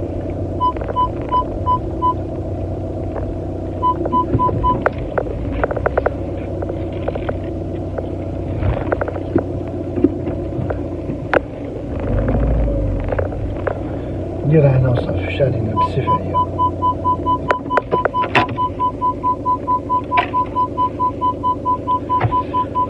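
A car's electronic warning chime beeping at about three or four beeps a second, in two short runs near the start and then nonstop over the last several seconds, over the steady drone of the car's cabin.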